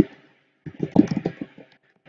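Computer keyboard keystrokes: a single click, then a quick run of key taps lasting about a second, as a variable name is typed into a spreadsheet-style table.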